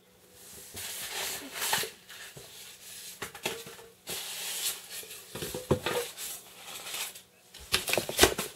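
A sheet of printed paper rustling and crinkling as it is handled and unfolded, going in irregular spells with a few sharper crackles and a brief pause about halfway.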